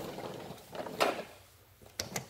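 Hard plastic knock from the Bissell PowerForce Helix upright vacuum being handled, about a second in, after a faint hiss. Two quick clicks follow near the end.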